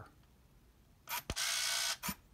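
Minolta Freedom Dual point-and-shoot film camera firing: two sharp clicks about a second in as the shutter trips, then about half a second of motor whir that stops short.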